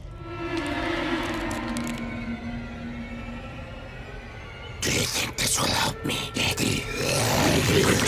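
Horror film score: quiet held string-like tones building tension, then about five seconds in a sudden loud, harsh stinger of noise and sharp hits as the creature is revealed.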